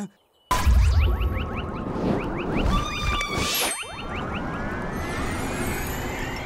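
Cartoon sound effects: after a brief silence, a loud burst starts about half a second in, with a deep rumble and many quick rising and falling whistle-like glides and whooshes that run on densely.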